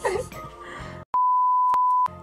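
A steady, single-pitched electronic beep, the kind of bleep dubbed over a video's soundtrack in editing, starting about a second in and lasting about a second, with all other sound cut out under it. Before it, soft voices over background music.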